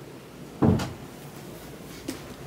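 A room door pushed shut with a single thump a little over halfway in.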